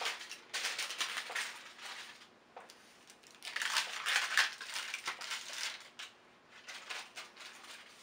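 Parchment paper being peeled off a freshly ironed, still-hot Perler bead panel, crinkling and crackling in three spells of a second or two each.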